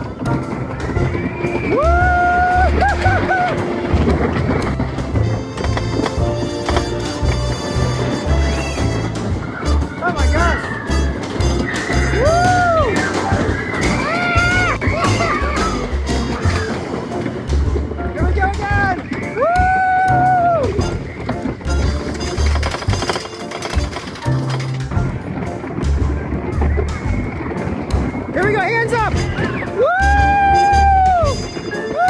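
A song with singing over a steady bass line, with held vocal notes rising and falling every few seconds.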